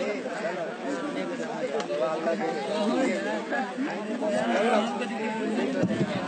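Speech only: indistinct chatter of several voices talking over one another.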